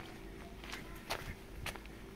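Footsteps walking on a cobbled street: three sharp steps, roughly half a second apart, the one a little past a second in the loudest.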